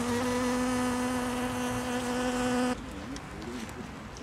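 A honeybee buzzing close by in one steady, loud hum that stops abruptly a little under three seconds in.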